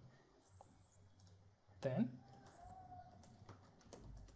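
Faint computer keyboard typing: a few separate key taps as a short phrase is typed into a spreadsheet cell.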